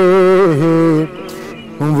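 Male voice singing a naat unaccompanied, holding a long note with a slow vibrato on the closing 'de' of the line. The note steps down and fades out about a second in, and a new sung phrase begins near the end.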